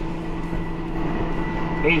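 Tractor engine running steadily under load, heard from inside the cab, with a faint steady high whine over the hum.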